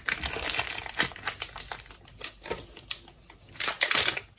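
Thin plastic wrapper crinkling and crackling as it is peeled by hand off a block of paneer: a dense run of crackles at first, then scattered ones, with another flurry near the end.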